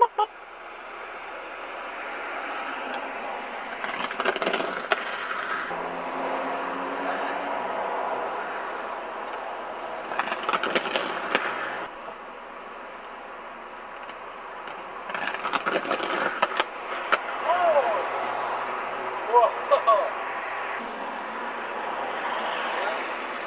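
A car passing on the street, with a steady traffic hiss and short clusters of sharp knocks three times. Voices call out near the end.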